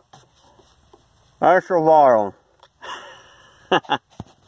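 A man's wordless voice, one drawn-out gliding sound about a second and a half in, followed by a sniff and a couple of sharp clicks near the end.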